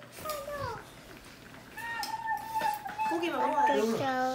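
A young child's voice: a short call, then a long held high note for about a second, then quick chattering syllables near the end.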